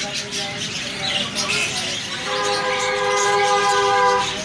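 A vehicle horn sounds one steady, unbroken note for about two seconds, starting about halfway in, over small caged birds chirping.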